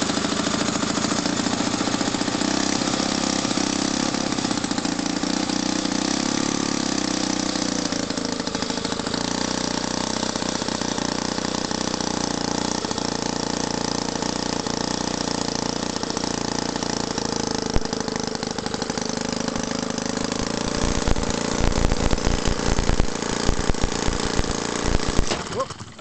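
George Punter 'Simple Simon' 25cc water-cooled four-stroke miniature engine running steadily. About three-quarters of the way through it runs unevenly with irregular knocks, then stops near the end.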